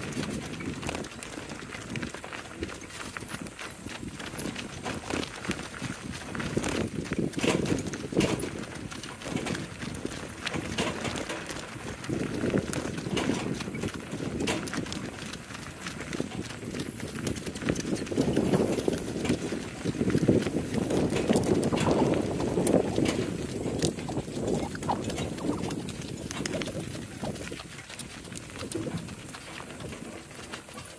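Hooves of a pair of harnessed donkeys clip-clopping on a gravel road, over the crunch and rumble of the cart's wheels on the gravel.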